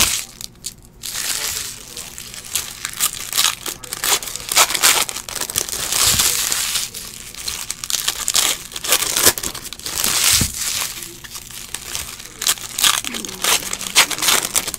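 Foil wrappers of 2018 Bowman Baseball hobby card packs being torn open and crumpled by hand, a fast, irregular run of crinkles and crackles with longer tearing rustles about six and nine seconds in.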